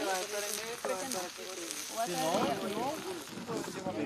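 Voices talking over chopped meat frying on a flat-top griddle.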